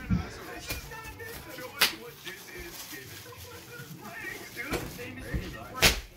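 Bubble wrap being popped by a small child: two sharp, loud pops, about two seconds in and just before the end, with a few fainter snaps between.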